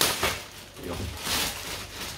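Clear plastic wrapping crinkling as it is pulled and handled on a backpack, loudest right at the start and again about halfway through.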